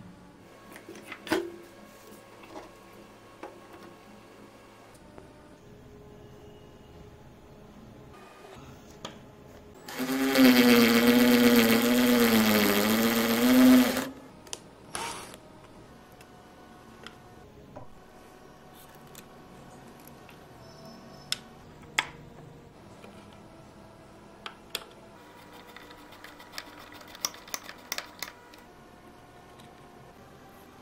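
An electric drill runs for about four seconds mid-way, its pitch wavering slightly as the bit bores a hole through the plastic wall of an electrical box. Light clicks and taps of hand work with screws and a screwdriver come before and after it.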